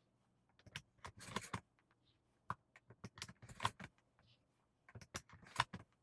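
Shotgun shells being handled and clinking together, with a rustle of fabric: a string of irregular sharp metallic clicks and short rattles.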